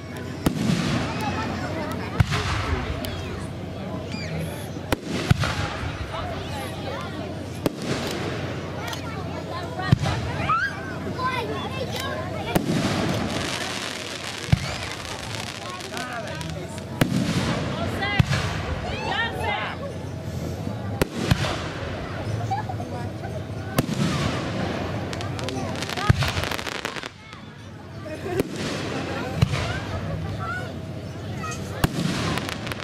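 Fireworks display: aerial shells bursting in sharp bangs every two to three seconds, about ten in all.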